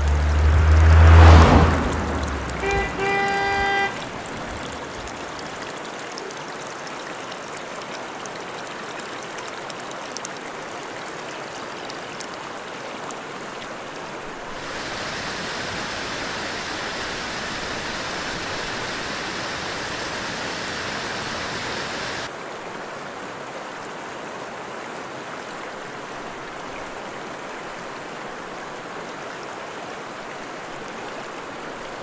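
Rushing water of a river and waterfall as a steady noise. It grows louder and brighter for several seconds in the middle and drops back suddenly. Near the start comes a loud, low whoosh, then a short horn tone sounding twice.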